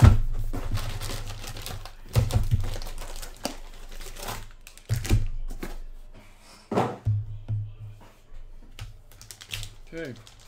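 A cardboard trading-card box being handled and unpacked: four dull thuds as it is knocked and set down, the first the loudest, between light clicking and crinkling of packaging.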